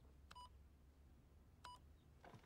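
Two short, faint computer beeps about 1.3 seconds apart, each opening with a click, as an e-mail program is worked on screen.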